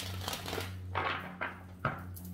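An oracle card deck being shuffled by hand: several short papery rustles of the cards, over a steady low hum.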